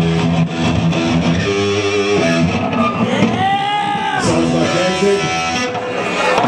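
Live band playing electric guitar and bass guitar through amplifiers, with held notes and one note bent up and back down about three seconds in.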